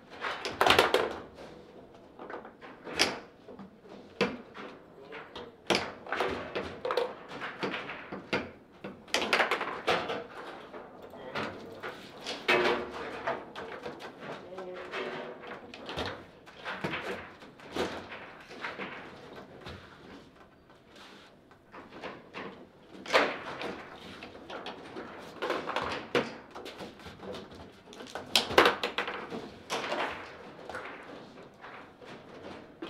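Foosball table in fast play: irregular sharp clacks and knocks as the ball is struck and passed by the plastic players and the steel rods bang against their stops, sometimes in quick clusters.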